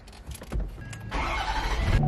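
Ford pickup truck's engine starting up, a low rumble coming in about half a second in and the engine running louder from about a second in.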